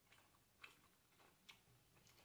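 Near silence with a few faint, irregularly spaced clicks from a man eating with a spoon.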